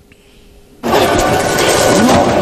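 Quiet, then a little under a second in a sudden loud, dense crashing din starts and keeps going, with a man's exclamation of 'Wa!' as it begins.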